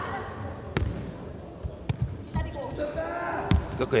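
Jokgu ball being struck during a rally in a sports hall: a few sharp thuds of the ball on feet and court, roughly a second apart.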